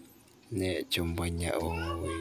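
A man's low-pitched voice in long held tones, starting about half a second in with a short break just before the one-second mark.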